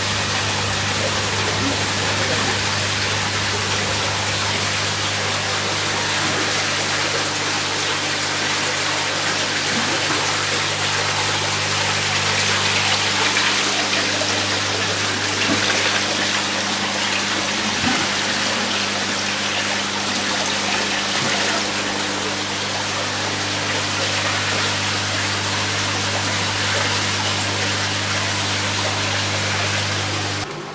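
Aquarium water bubbling and splashing from tank aeration and filters, over the steady low hum of electric air pumps.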